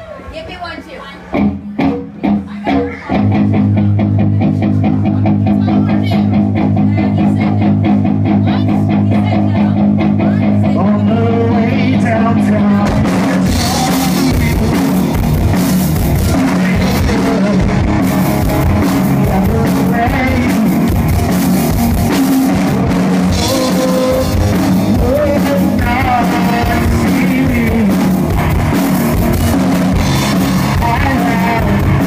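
Live rock band: a few separate electric guitar stabs, then a steady repeated guitar chord pattern from about three seconds in. About halfway through, the drums and the rest of the band come in, with a man singing over it.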